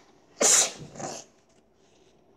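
A young girl sneezing once, a sharp burst about half a second in, followed by a softer trailing breath.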